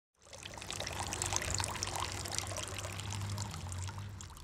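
Water poured in a thin stream into a glass, splashing and bubbling, easing off near the end.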